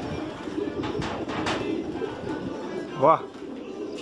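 Domestic racing pigeons cooing steadily, a low wavering murmur of many birds.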